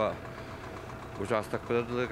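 Speech: a voice talking in Sakha, pausing briefly and starting again about a second in, over a steady low mechanical hum.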